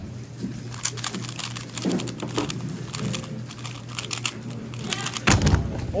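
A 3x3 speedcube being turned very fast in a sub-5-second solve: a rapid run of light plastic clicks, ending in a loud slap on the Stackmat timer pads about five seconds in as the solve is stopped.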